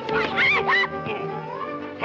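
Orchestral cartoon score with a few short, high vocal cries that rise and fall in pitch in the first second, then a slow rising line in the music.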